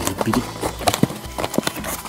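Cardboard blind-box packaging being pulled apart and handled by hand: irregular rustling, scraping and clacking.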